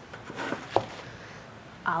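Quesadilla wedges being handled and set down on a wooden cutting board: faint rustling and one light tap on the wood.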